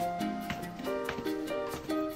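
Background music: a light tune of plucked notes over a steady beat.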